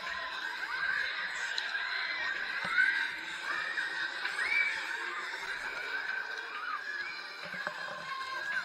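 Riders on a Huss Booster thrill ride screaming and whooping in short repeated cries as it spins, over fairground ride music.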